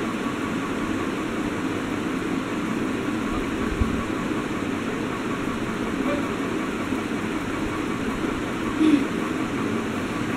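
Steady, even background noise, with one soft low thump about four seconds in.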